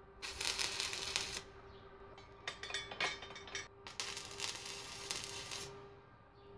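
Electric arc welding with a small inverter welder, tack-welding the joints of a frame made of square steel tube. The arc crackles in two runs, about a second near the start and about three seconds from the middle on, over a faint steady hum.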